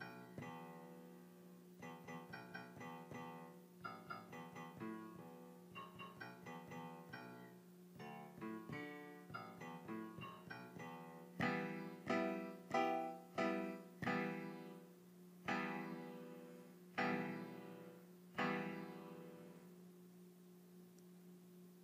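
GarageBand Smart Piano's sampled grand piano, played by tapping chord strips on an iPad. For about the first ten seconds it plays quick, soft single notes and broken chords, then louder full chords struck about once a second, each ringing and fading.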